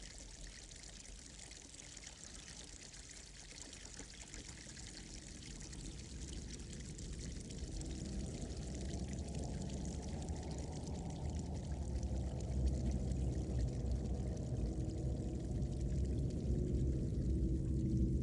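Spring water trickling and pouring over rocks. From about six seconds in, a low rumble swells and grows steadily louder.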